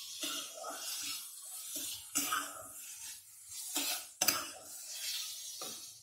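Steel spatula scraping and stirring chopped vegetables frying in a non-stick kadhai, in a run of short, uneven strokes; the sharpest scrape comes about two-thirds of the way through.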